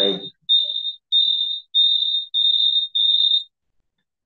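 A high-pitched electronic beeper sounding a run of short, evenly spaced beeps, a little under two a second, which stops shortly before the end.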